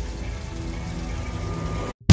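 Soundtrack music with sustained held tones over a steady rain-like hiss. It cuts off suddenly just before the end.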